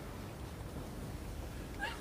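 Quiet room tone with a low hum. Near the end a man's voice makes a brief rising sound, just before he starts speaking.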